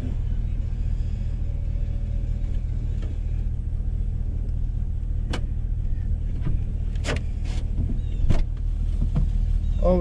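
A truck's engine idles steadily, heard from inside the cab. A few sharp clicks and a knock come in the second half as the passenger door is opened.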